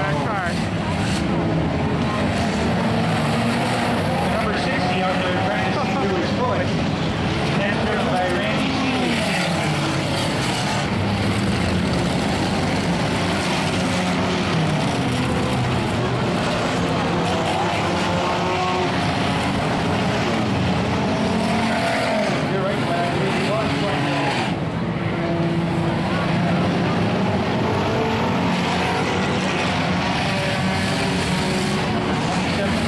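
A field of enduro stock cars racing around a dirt oval, many engines running at once, their pitch rising and falling as cars accelerate, lift and pass.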